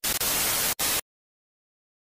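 TV static sound effect used as a video transition: a loud, even hiss of white noise with two brief dropouts, cutting off suddenly about halfway through.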